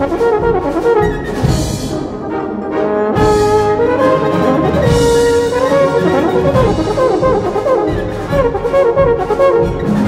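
Brass band and euphonium soloist playing a concertino: several brass lines moving together over a sustained low bass.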